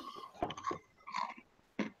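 Faint, scattered short sounds during a pause in talk: a few soft clicks and brief low murmurs or mouth noises.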